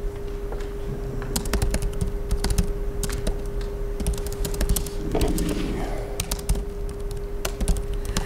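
Typing on a laptop keyboard: runs of quick, irregular key clicks, over a steady low hum.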